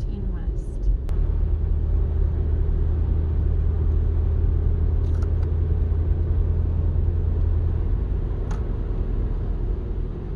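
Steady low road and engine rumble inside a moving car's cabin, its tyres running on a snow-covered road. It grows slightly louder about a second in and then holds level.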